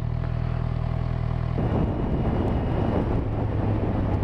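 Kawasaki Z1000 inline-four engine idling steadily. About a second and a half in, the sound cuts abruptly to the bike riding along, its engine running under a rough rush of wind noise.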